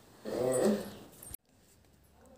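A short moaning voice of about half a second that rises and then falls in pitch, followed by an abrupt cut to near silence.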